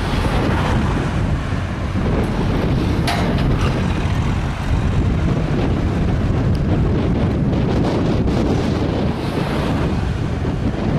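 Wind buffeting the microphone and road noise from a moving vehicle, a steady loud rumble, with one brief click about three seconds in.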